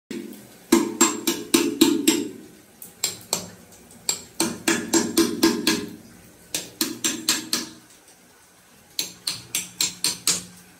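Hammer blows at the edge of a tiled bathroom floor drain, in quick runs of several sharp strikes, about four a second, each with a short ring, with pauses between the runs.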